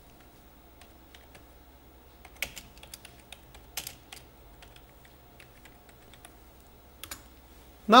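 Typing on a computer keyboard: scattered, quiet key clicks, with a few sharper strikes about two and a half, four and seven seconds in.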